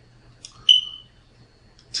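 A soft click, then a short, loud, high-pitched electronic beep that fades within a fraction of a second, over a faint steady hum.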